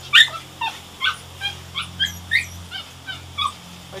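A dog whining and yipping in short, high-pitched cries, about two or three a second, over the steady low hum of the boat's engine.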